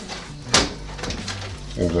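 A single sharp metal clack as kitchen tongs grip and lift a chicken breast off the oven's wire crisper tray, over a low steady hum.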